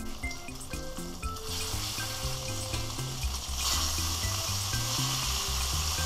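Thick-cut bacon strips sizzling in a cast-iron skillet as they are turned with tongs. The sizzle grows louder about a second and a half in and louder again a little before four seconds in.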